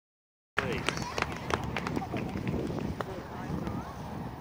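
After half a second of silence, people talk in the background outdoors, with scattered sharp clicks and knocks during the first few seconds.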